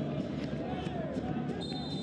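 Steady stadium crowd noise with voices mixed in. Near the end a referee's whistle begins a single long, steady blast.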